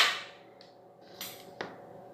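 Sharp multi-pump air rifle being handled after a single pump: a loud sharp metallic clack right at the start, ringing briefly, then a light rustle and a small click about a second and a half in.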